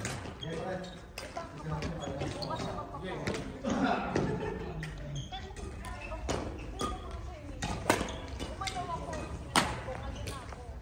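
Badminton rally: sharp racket strikes on the shuttlecock at irregular intervals, the loudest two near the end, amid players' voices.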